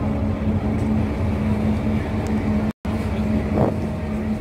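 Car ferry's engines droning steadily while underway, heard from the open deck as a low hum under a wash of noise. The sound cuts out for an instant about three seconds in.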